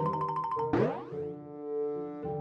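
Cartoon score playing a rapidly repeated high note, cut by a quick upward-sweeping cartoon sound effect about three-quarters of a second in, then held notes.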